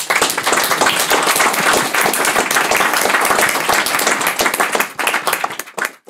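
Audience applauding: many people clapping steadily, thinning out near the end.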